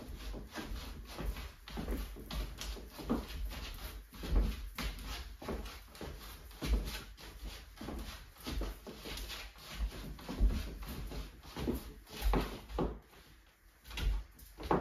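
Dance steps on a wooden floor: irregular thuds, taps and scuffs of shoes kicking and stepping through the Charleston, a few per second.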